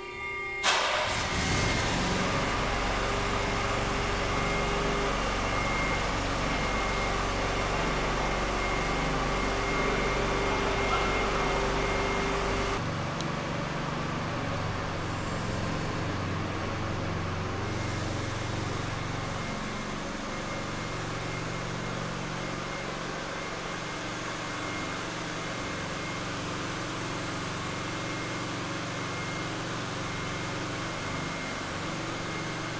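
A car engine running steadily. It starts abruptly about half a second in, and its low hum changes about 13 seconds in.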